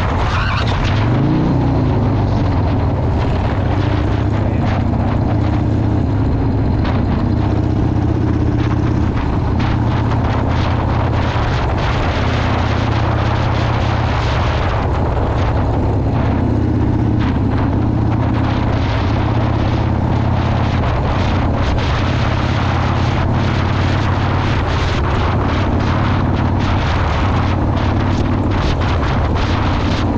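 Harley-Davidson 1997 Dyna Low Rider's Evolution V-twin running steadily at cruising speed, with heavy wind rushing over the microphone. The pitch rises and falls briefly about a second in.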